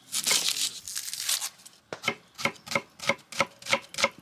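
Kitchen knife working a brown onion on a wooden chopping board: a crackly rasp of the dry papery skin being cut and peeled for the first second and a half, then quick even strokes of the blade through the onion onto the board, about four a second.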